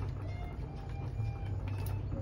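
A steady low hum, with a few faint thin tones above it and no distinct knocks.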